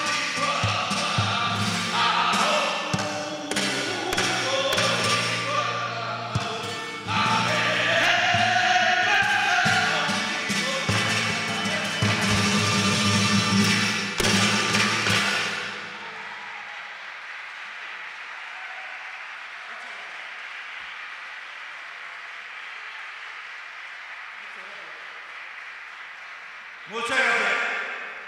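A flamenco singer sings with a flamenco guitar, the guitar giving sharp strummed strokes under the voice. The music stops about sixteen seconds in, leaving a quieter, steady background noise.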